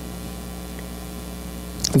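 Steady electrical mains hum with a faint hiss from the microphone and sound system: a low buzz with a row of even overtones above it.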